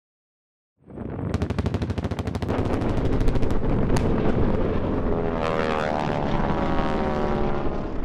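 Airshow pyrotechnics and low-flying radial-engined warbird replicas: the sound cuts in just under a second in with a rapid string of sharp cracks, like machine-gun fire, over the heavy rumble of a pyrotechnic blast, with one louder crack about four seconds in. From about five seconds the engine note of a low-passing aircraft falls in pitch as it goes by.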